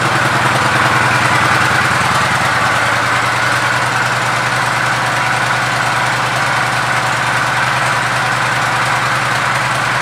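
Kawasaki Vulcan 900 Classic's V-twin engine idling steadily.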